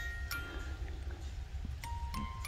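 Wind-up music box in a Noah's Ark figurine playing its tune: bright plucked comb notes that ring on, a few a second, with a short pause mid-phrase before the melody picks up again near the end.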